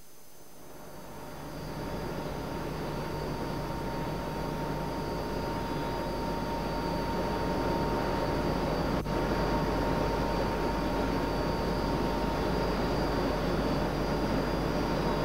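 Steady industrial machinery noise: a low hum under a broad rush with a thin, steady whine. It fades in over the first two seconds, and there is one short click about nine seconds in.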